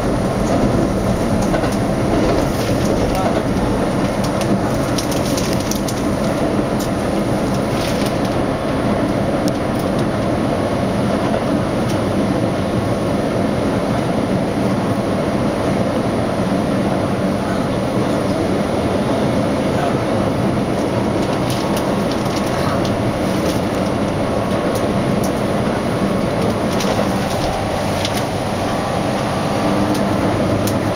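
Keihan limited express electric train running on the line, heard from the driver's cab. A steady rumble of wheels on rail, with occasional light clicks over the track.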